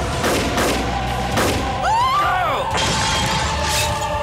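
Horror trailer sound design: a low music drone under several sharp crashing hits, with a shrill cry that rises and falls about two seconds in.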